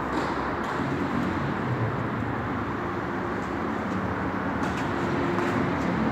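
Steady background rumble and hiss of the indoor court's room noise, with no distinct racket-on-ball strikes standing out.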